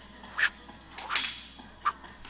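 Three short, sharp swishes and hits from a rehearsed fight with practice swords, spaced about two-thirds of a second apart.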